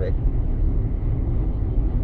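Steady low road rumble inside the cabin of a car driving at speed on a highway: tyre and engine noise, with no change in level.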